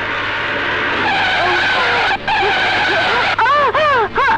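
Car tyres skidding, a loud sustained screech with vehicle noise. Near the end a wailing sound begins, rising and falling in quick repeated swells.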